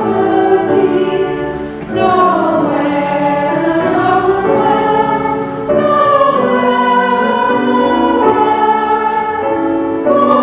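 A small choir singing a Christmas carol, accompanied by grand piano and flute, in phrases of a few seconds with short breaks between them.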